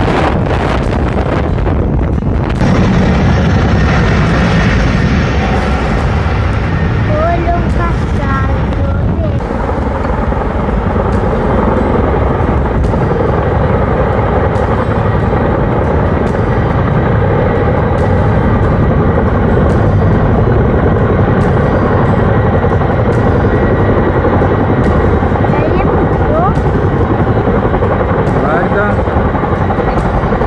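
A helicopter hovering low over water, its rotors and engines running in a loud, steady drone while it dips its firefighting water bucket.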